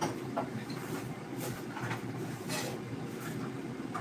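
A spoon scraping and clinking in a stainless steel mixing bowl several times, over a steady low hum.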